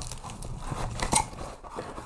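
Cardboard box and its packing crackling and scraping as it is handled and a strap is pulled out of it, with a few small clicks.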